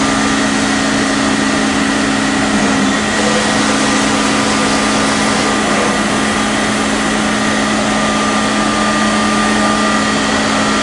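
Steady hum of running machine-shop machinery: a low drone made of two close tones over a noise haze, with fainter higher tones. The upper of the two low tones drops away about three seconds in and returns near the end.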